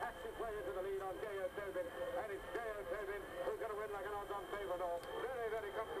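Horse-race radio commentary: a man's voice calling the closing stages of a race in quick, unbroken speech, on an old radio recording.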